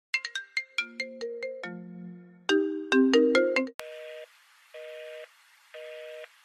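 A phone call's audio: first a quick melodic run of chiming electronic notes, then, about four seconds in, a telephone busy signal of two-tone beeps, half a second on and half a second off. The busy signal means the called line is engaged or not answering.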